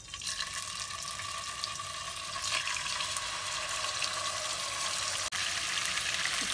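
Marinated chicken pieces sizzling in hot oil in a nonstick pot. The sizzle starts suddenly as the first piece goes in and keeps up loud and steady as more pieces are added.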